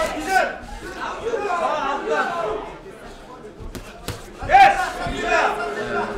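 Men's voices calling out in a large hall with some crowd chatter, loudest a little past the middle, and a couple of sharp knocks just before that.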